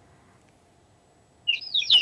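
Near silence, then about one and a half seconds in a bird gives a quick run of high chirps.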